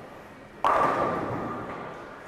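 A sudden heavy thud and rumble in a bowling alley about half a second in, fading away over the next second and a half.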